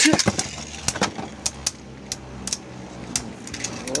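Two Beyblade Burst tops spinning in a plastic stadium just after launch, with a steady low hum and repeated sharp clacks as they strike each other and the stadium.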